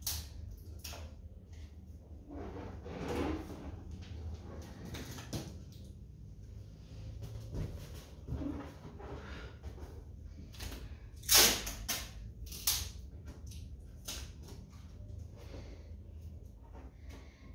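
Latex balloons being handled and pressed against a wall: scattered rubbing, rustling and light knocks, loudest in two sharp bursts a little past the middle.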